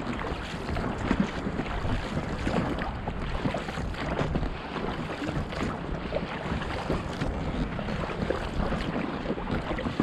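Choppy sea water splashing and slapping irregularly against the hull of an inflatable dinghy as it is rowed, with wind buffeting the microphone.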